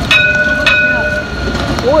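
Light-rail tram's warning bell struck twice, about half a second apart, each stroke ringing on for about a second.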